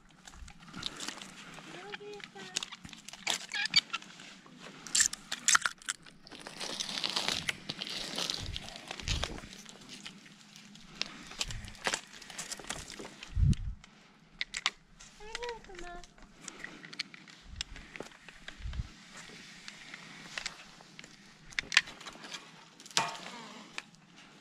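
Conifer branches and needles rustling and scraping against a climber and his rope as he descends through a tree's crown, with many sharp crackles and snaps of twigs. Two short wavering pitched sounds come about two seconds in and again past the middle.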